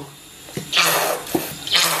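Oyster sauce squeezed from a plastic squeeze bottle into a pot of braising liquid, coming out in two noisy, watery spurts about a second apart.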